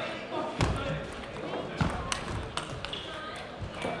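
Table tennis rally: the celluloid ball clicking sharply off the rubber bats and the table in a quick, irregular series of hits, ringing slightly in a large hall.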